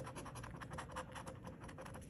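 A coin scraping the coating off a scratch-off lottery ticket: a quick, faint run of short scratching strokes.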